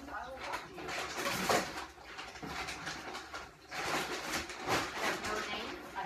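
Rustling and crinkling of plastic air-pillow packing and cardboard as a shipping box is dug through and unpacked, in two spells.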